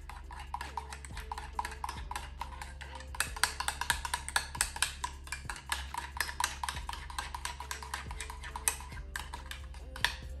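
A spoon stirring a drink in a ceramic mug, clinking quickly against the sides several times a second. The clinks are loudest around the middle.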